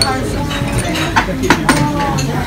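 Several sharp clinks of crockery and cutlery in a restaurant dining room, over background voices.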